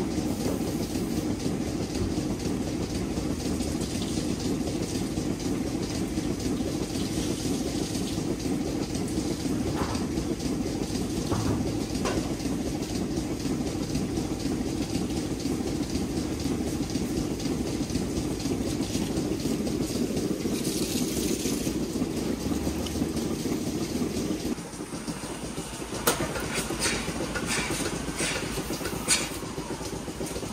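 Steady mechanical rumble of milking parlour machinery. About 25 seconds in it drops away, and a few sharp clicks and metallic knocks follow.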